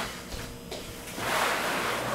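Fabric rustling as a fitted bedsheet is pulled and tucked over a mattress: a small knock just under a second in, then a long swell of rustling.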